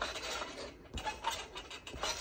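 Person bouncing on a trampoline: soft thumps of landings on the mat, about once a second.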